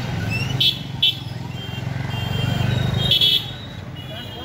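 Road traffic with a steady low engine rumble. Three short, sharp high-pitched sounds stand out above it: about half a second in, at about one second, and again at about three seconds.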